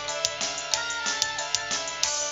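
Live dangdut koplo jaranan band music over a PA: an instrumental passage with a held, stepping melody over a steady beat, and a sharp percussion hit about twice a second.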